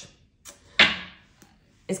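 A woman's single short, breathy sigh about a second in, starting sharply and fading within half a second.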